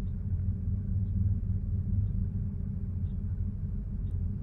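Porsche 930's air-cooled flat-six engine idling steadily at about 1000 rpm while still warming up from a cold start, heard from inside the cabin as a low, even rumble.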